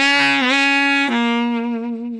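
A saxophone plays a short phrase: a held note, then a step down about a second in to a slightly lower note that fades away near the end. It is the instrument's sample in a children's music game, played when the saxophone is chosen.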